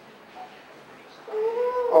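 Quiet room hiss through a microphone, then near the end a man's drawn-out "oh" into the microphone, held on one pitch.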